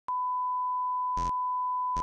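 Steady 1 kHz test tone, the reference tone that runs with SMPTE colour bars at the head of a videotape, broken by a short burst of noise about a second in and another near the end.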